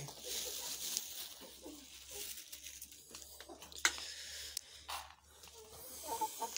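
A flock of hens and roosters pecking at scattered feed, with soft clucks now and then and a couple of sharp taps about four and five seconds in.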